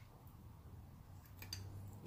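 Near silence with a low hum and a few faint clicks, the clearest about one and a half seconds in, from a homemade syringe hydraulic steering linkage being worked by hand.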